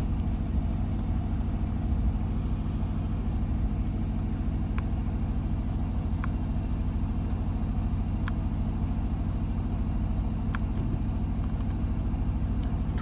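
Aston Martin DB11's engine idling steadily in Park, heard from inside the cabin, with a few faint clicks.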